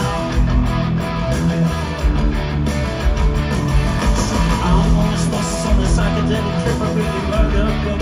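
Live rock band playing loudly, an instrumental passage led by electric guitars with the full band behind them and no singing.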